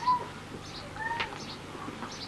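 Two short pitched animal calls, one at the start and one about a second in, like a cat's mew, over scattered short high chirps.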